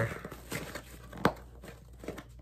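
Packaging rustling and tearing as a mailed coffee mug is unwrapped by hand, with scattered small clicks and one sharp tap about a second and a quarter in.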